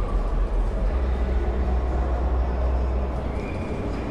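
Busy exhibition hall background noise: a steady deep rumble under a mix of indistinct distant sounds, easing slightly near the end.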